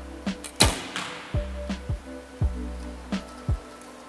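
A recurve bow shot about half a second in: one sharp crack of the string's release, the loudest sound here, over background music with a steady kick-drum beat.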